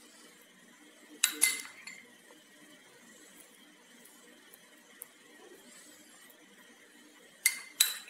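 A spoon clinking against a small glass bowl of pizza sauce: two quick ringing clinks about a second in, and two more near the end.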